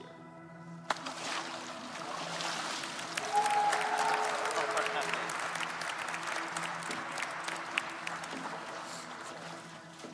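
Congregation applauding and cheering, starting suddenly about a second in and thinning near the end, over soft background music.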